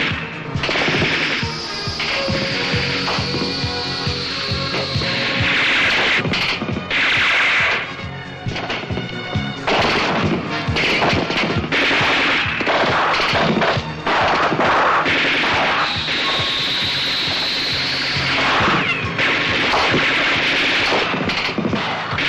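Submachine guns firing in repeated rapid bursts, laid over a film score. A high whistling tone sweeps in near the start and again about two-thirds of the way through.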